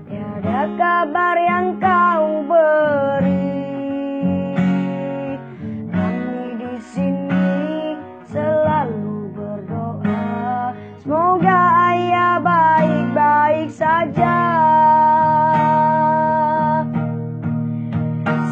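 Acoustic guitar strummed as accompaniment to a boy singing a slow ballad melody, with long held notes near the end.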